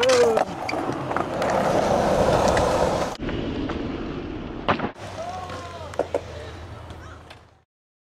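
Skateboard wheels rolling on concrete, then a sharp clack about four and a half seconds in as the board lands a jump, followed by a couple of smaller knocks. Voices call out briefly after the landing, and the sound fades out near the end.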